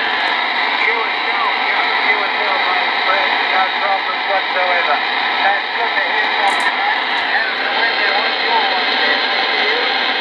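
RCI-2980 radio's speaker on the 11-metre CB band: steady static hiss with a weak, wavering voice under it, the sound of a distant station coming in by skip.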